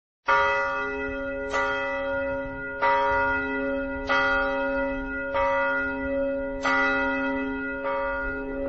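A large church bell tolling slowly, struck seven times about every second and a quarter, each stroke ringing on under the next.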